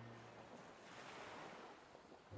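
Faint ocean surf: a soft wash of waves that swells about a second in and then ebbs.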